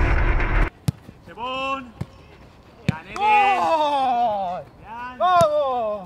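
A person's voice calling out in three drawn-out shouts, each sliding downward in pitch, the middle one the longest, with a few sharp knocks in between. A loud burst of sound from the title sequence cuts off about half a second in.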